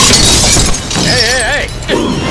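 Glass shattering and debris clattering in a film crash scene, dying away within the first second. This is followed near the middle by a short wavering cry.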